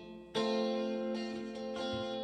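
Guitar strumming in a live song: after a short lull, a loud chord comes in about a third of a second in and rings on, followed by further chord strokes.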